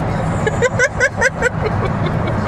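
Steady road and engine noise inside a moving car's cabin, with a brief laugh of about six quick, high-pitched notes in the middle.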